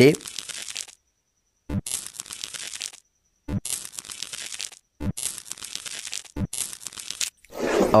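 Crackly tearing sound effects for a knife cutting into the growth, in about five bursts of roughly a second each, with abrupt dead silence between them.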